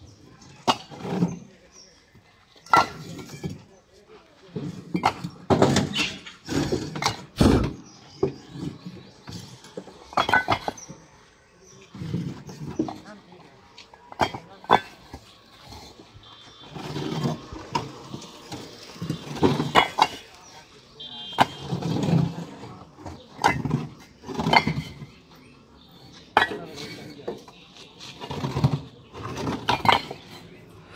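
Fired clay bricks clinking and knocking against one another as they are laid onto a stack by hand, in many sharp, irregular strikes, with voices talking in between.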